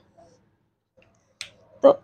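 Two short, sharp clicks about half a second apart, the second louder, from a whiteboard marker being handled at the board.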